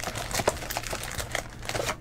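Cardboard trading-card box and foil-wrapped packs rustling and crinkling as the box is opened by hand, in a run of irregular small crackles.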